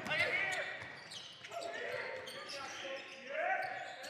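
Basketball bouncing on a wooden court floor as it is dribbled, with faint players' voices calling out in a sports hall.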